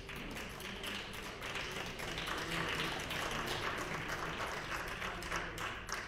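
Applause from many members seated in a large legislative chamber, swelling about a second in and thinning out near the end.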